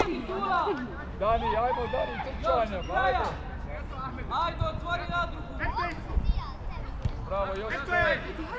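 Players and coaches calling and shouting across a football pitch, with a few thuds of the ball being kicked around the middle and near the end.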